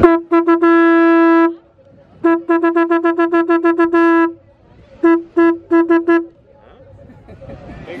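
A conch shell blown as a horn, sounding one steady note. It comes in three goes: a few short toots and a long held blast, then a fast run of short toots ending in a held blast, then a shorter run of toots.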